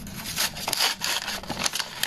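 Paper rustling and crinkling in a run of irregular scraping strokes as a small handmade paper envelope is opened by hand.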